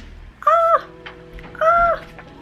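Two short, high-pitched cries, about a second apart, each lasting about a third of a second.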